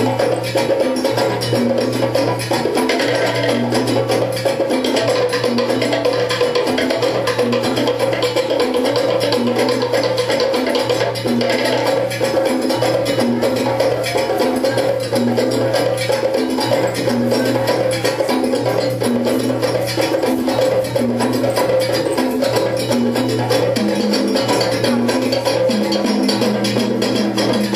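Dance music with a steady beat: busy percussion over a repeating bass line, without pause.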